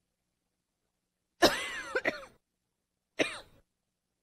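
A person coughing: a sudden bout about a second and a half in, lasting about a second, then one shorter cough near the end.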